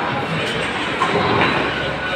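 Steady rumbling din of a bowling alley: balls rolling down the wooden lanes and the ball-return and pinsetter machinery running, with a couple of light knocks about a second in.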